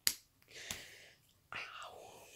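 A sharp click, then breathy, whispered voice sounds: a short hiss followed by a falling, breathy voice sound near the end.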